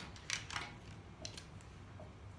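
A few light clicks and rustles of felt-tip markers being picked out of a pile on a table, one of them uncapped.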